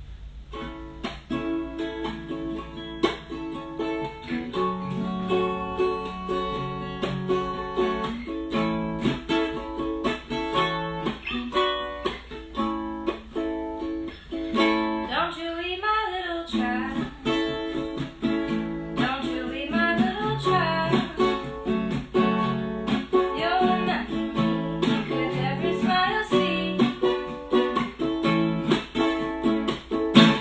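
Ukulele and acoustic guitar played together in a song, starting just under a second in, with a voice singing from about halfway through.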